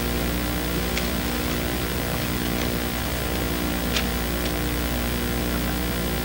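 Steady electrical hum and hiss, the background noise of the sound system, with two faint ticks about a second and four seconds in.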